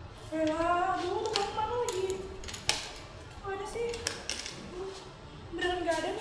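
A high voice making drawn-out, gliding sounds in three phrases, with no clear words, and one sharp knock a little before the middle.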